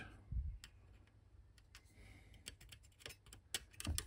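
Scattered light clicks and ticks from hands handling the metal chassis and parts of a small TV, with a soft thump soon after the start and a sharper click near the end.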